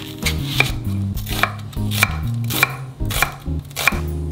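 Chef's knife chopping vegetables (onion, green onion, chili pepper) on a wooden end-grain cutting board: about six sharp strikes, a little more than half a second apart.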